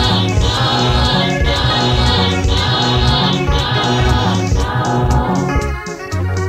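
Choir gospel music: a choir singing held chords in phrases about a second apart over a bass line, briefly dipping near the end.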